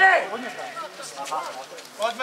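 Men's voices calling out, with one loud shout at the start that drops away to quieter, scattered calls.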